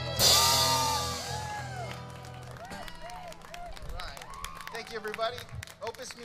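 A band's closing hit: a cymbal crash and a held chord ring out and fade, the chord stopping about two and a half seconds in. Then the audience claps and cheers.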